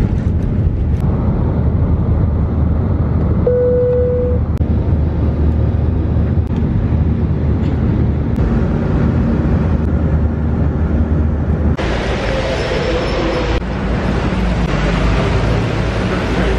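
Airliner cabin noise from a window seat near the wing: the jet engines give a loud, steady rumble during takeoff and climb, with a brief steady tone about three and a half seconds in. Near the end the sound changes to a brighter, steady hiss of outdoor traffic noise.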